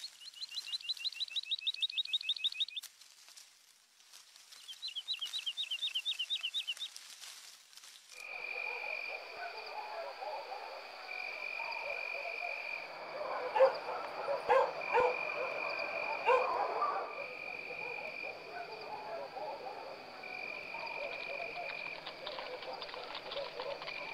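Rural animal sounds: two bursts of a rapid pulsing trill, each about three seconds long with a pause between. About eight seconds in, the sound changes to a steady high whine that comes and goes over a busier layer of animal calls, with a few louder sharp calls in the middle.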